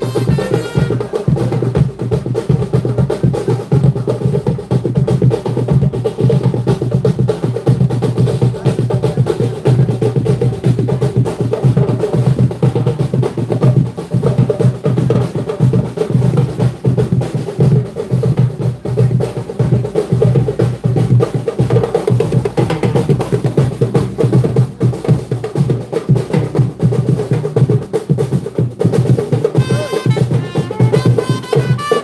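Marching snare and bass drums played on foot, keeping up a continuous, fast, loud beat.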